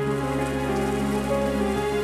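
Brine trickling down through the blackthorn brushwood wall of a salt-works graduation tower, a steady spray-like hiss, under background music of slow, held notes.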